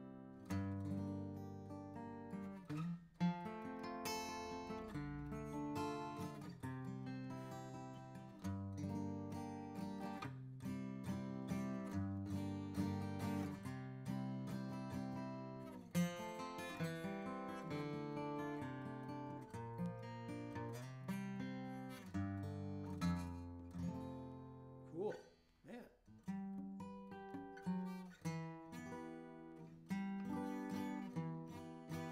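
Furch D-SR dreadnought acoustic guitar with a Sitka spruce top and Indian rosewood back and sides, played fingerstyle: chords and single notes ring out clearly with long sustain. There is a brief break in the playing about five seconds before the end.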